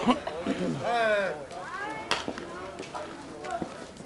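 Loud shouted calls from players on a softball field in the first second and a half, then a single sharp crack about two seconds in.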